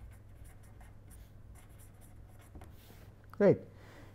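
Pen writing on paper: a string of short, faint scratching strokes as a few words are handwritten.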